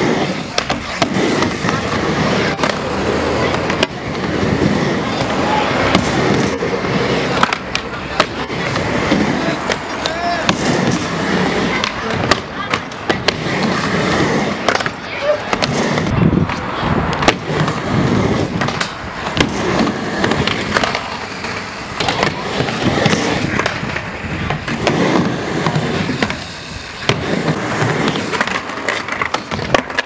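Skateboard wheels rolling on a wooden mini ramp, with many sharp clacks and knocks of the board striking the ramp as tricks are landed.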